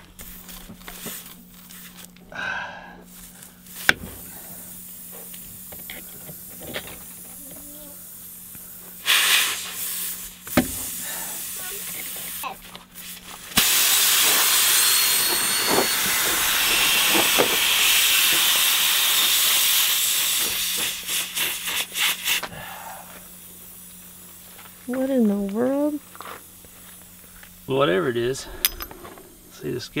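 Air hissing out of a punctured trailer tire through the nail hole. It starts suddenly about halfway through and fades away over about nine seconds, after a few knocks of tools on the wheel.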